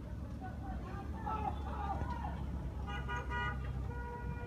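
A vehicle horn sounds once, briefly, about three seconds in, over a steady low rumble of a running engine. Voices are heard shortly before the horn.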